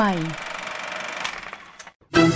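The last spoken word of a Thai TV rating announcement, then a steady hiss that fades away and drops to silence just before the end.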